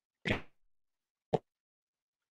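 Two short, sudden knocks about a second apart, the second one sharper and briefer.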